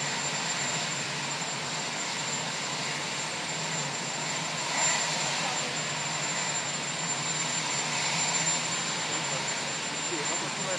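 Steady engine noise with a constant high whine over a broad hiss, running evenly with one brief louder moment about halfway through.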